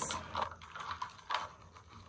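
Metal Cuban link chain necklaces clinking lightly as they are handled, a couple of faint clicks about a second apart.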